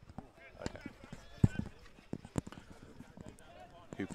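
Field hockey play on an artificial turf pitch: irregular sharp knocks of hockey sticks striking the ball, the loudest about a second and a half in, with faint shouts from players on the pitch.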